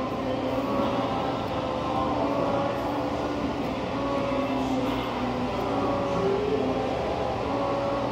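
Steady, droning background noise of a loud room, with held tones running through it. The light strokes of the knife on the whetstone are not heard above it.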